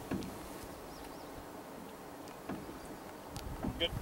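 Quiet open-air ambience on a lake: a low steady background hiss, two faint high chirps about a second in, and a couple of faint knocks in the second half.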